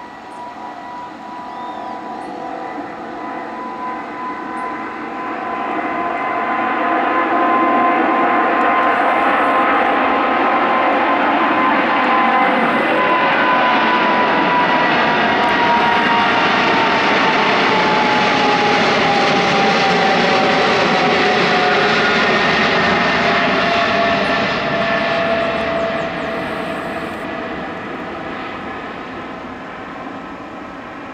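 Alitalia Boeing 777's twin jet engines at takeoff thrust: the roar builds as the airliner rolls and lifts off, stays loud as it climbs past, then fades as it climbs away. A high whine rides on the roar and drops in pitch as the jet goes by.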